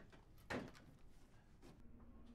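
Near silence: room tone, broken about half a second in by one short spoken word, the end of "hold on".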